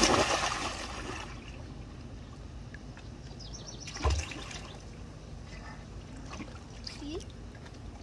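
A child dropping into a swimming pool: a loud splash as he goes under, then water lapping, and a shorter splash about four seconds in as he comes back up.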